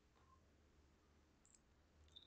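Near silence, with a couple of faint clicks.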